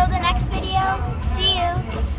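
A young girl's voice, sing-song and drawn out, with a steady low rumble underneath.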